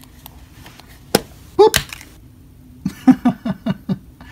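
Plastic push-up toy tube pushed up until its snap-on cap pops off: a sharp click about a second in, then a louder pop just before the middle. Near the end comes a quick run of short vocal sounds.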